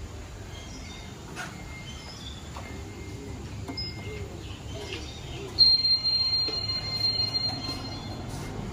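Schindler 5000 passenger lift answering a hall call: a short beep as the up button is pressed, then a second and a half later a sudden, loud, high electronic arrival chime that rings on and fades over about two seconds as the car arrives. A steady low hum runs underneath.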